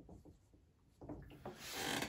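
Faint felt-tip dry-erase marker strokes rubbing on a whiteboard. After a short silence, a soft rustling hiss rises near the end.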